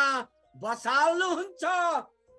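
A man reading aloud in Nepali in two emphatic phrases, over faint background bansuri flute music holding a steady note that shows in the pauses.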